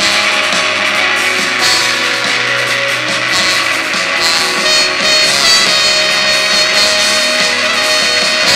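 Rock band playing loudly live through a stage PA, with electric guitars and keyboard in a dense, unbroken wall of sound.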